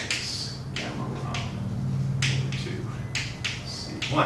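Chalk writing on a blackboard: about ten short, irregular taps and scratches as strokes are laid down, over a steady low room hum.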